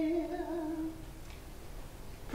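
A woman's voice holding a low, steady sung note that fades out about a second in, followed by quiet.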